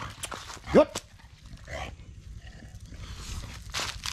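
A short spoken command about a second in. After it come faint footsteps and rustling on dry leaves and dirt.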